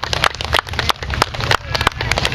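Scattered applause, many hands clapping irregularly, from a crowd.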